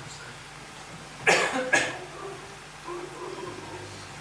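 A man coughing twice into his hand: two short coughs about half a second apart.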